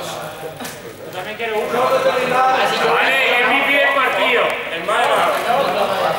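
Indistinct voices of young men talking and calling out in a sports hall, with one louder, higher-pitched call about three seconds in.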